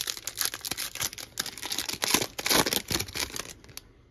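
Foil wrapper of a Donruss Optic football card pack being torn open and crinkled by hand, an irregular run of crackles that goes quiet just before the end.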